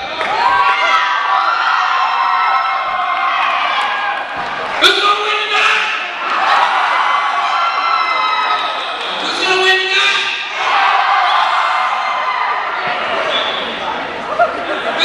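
A football team's young men's voices chanting together, with long held notes that rise and fall. A sharp slap or stomp comes about five seconds in.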